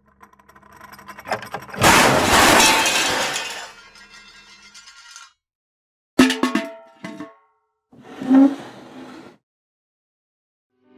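Something shattering in a loud crash about two seconds in, fading over a second or two. It is followed after a silence by two shorter, fainter sounds.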